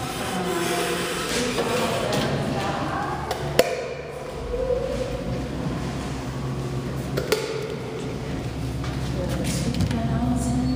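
Indistinct voices in a large hall, with a sharp click a little over three seconds in and another a little over seven seconds in. A steady low hum comes in about four seconds in.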